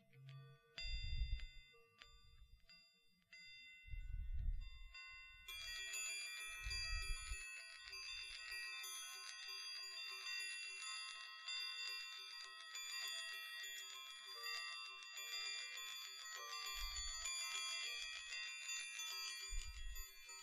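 Chrome Baoding balls with chime bells inside ringing close to the microphone: a few separate chimes at first, then from about five seconds in a continuous shimmering ring of many high tones as the balls are turned in the hand. Soft low handling thumps come now and then.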